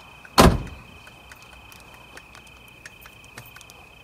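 A single loud door slam about half a second in, a door of the 1975 VW bus camper being shut, with a short ringing tail.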